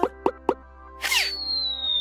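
Cartoon sound effects over background music: two quick pops, a short swoosh about a second in, then a long high whistle that slowly falls in pitch.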